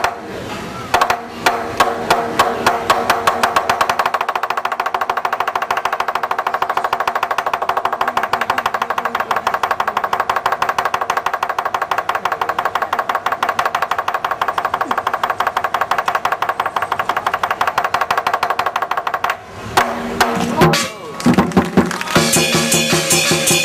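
Lion dance percussion, drum and cymbals, playing a fast, even roll that holds steady while the lion balances. The roll breaks off about three seconds before the end and gives way to a few separate beats.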